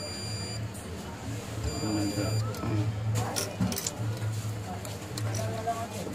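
Digital multimeter's continuity buzzer beeping twice in a high steady tone, the first beep stopping just after the start and a shorter second one about two seconds in, over a steady low hum, with a few sharp clicks near the middle. The beep means the probes find continuity across the phone board's power points, the sign of a short.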